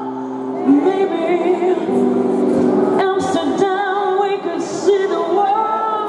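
Live pop song: a woman's voice singing a melody with vibrato over held instrumental chords, heard in a large hall.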